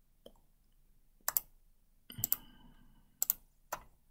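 Computer mouse clicks: a double click a little after one second, another about two seconds in, a third just past three seconds, then a single click.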